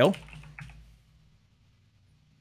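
A few quiet keystrokes on a computer keyboard in the first second.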